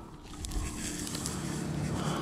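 Uneven low rumble of wind on a rooftop camera's microphone, with a few faint clicks as the antenna cable is handled against the roof shingles.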